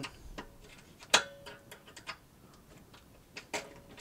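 A few small metallic clicks of a hex key working the belt-clamp bolts, with one louder click about a second in that rings briefly, and a couple of fainter ones near the end.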